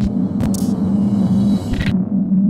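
Logo sound effect: a loud, steady low rumble, broken by short bursts of glitchy static hiss about half a second in and again near the end.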